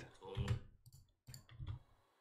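A few quiet clicks from working the computer, about three spread over the second half, as playback is started in the editing program.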